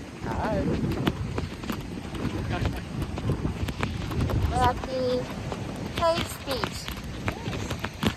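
Wind buffeting the phone's microphone with a constant low rumble and hiss. Short snatches of voices break in a few times, about half a second, four and a half seconds and six seconds in.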